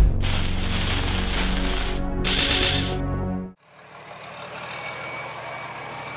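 Intro music sting with hits and whooshing sweeps that cuts off suddenly about three and a half seconds in. Then, more quietly, a Toyota FJ40 off-roader's engine runs steadily under an even outdoor hiss.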